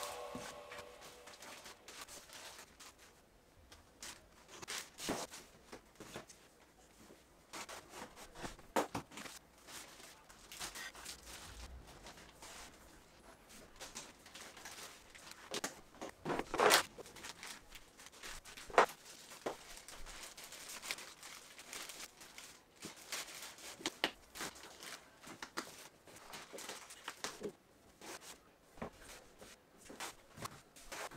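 Faint, scattered handling sounds: plastic bags rustling and crinkling, with short clicks and knocks of clear plastic storage boxes and lids being moved. The sharpest knock comes a little past the middle, with a cluster of rustles just before it.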